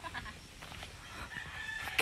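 Faint rooster crowing over a low outdoor background hiss.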